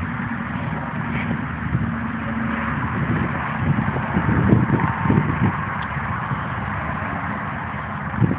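A steady mechanical rumble with a broad hiss, like a running engine, with a few low knocks about halfway through.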